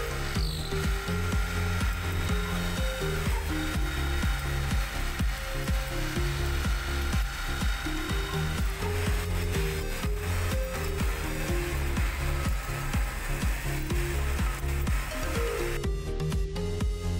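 Automatic wood drilling and threaded-insert machine working a wooden chair rail, giving a steady whine under electronic background music with a steady beat. The machine sound fades out about nine seconds in, leaving the music.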